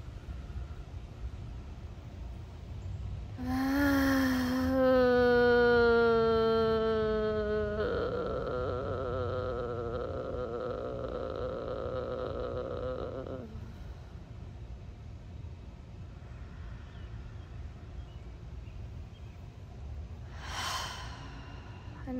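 A woman's voice letting out one long, sustained vocal tone on an exhale, starting about three and a half seconds in and sliding slightly lower in pitch; its sound changes about eight seconds in and fades out at about thirteen seconds. It is a release sound made as part of a somatic breathing exercise, followed by a short breath near the end.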